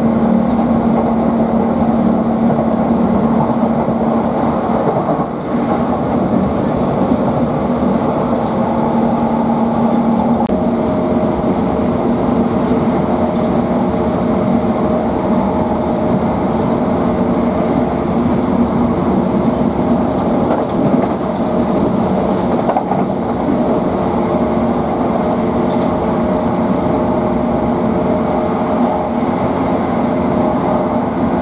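Interior of a Class 465 Networker electric multiple unit running at speed: continuous wheel-and-rail rumble with steady humming tones. The hum shifts higher in pitch about ten seconds in.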